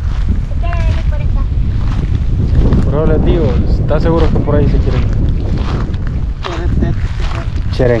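Wind buffeting the microphone, a continuous low rumble. Voices call out over it around three to four seconds in and again near seven seconds.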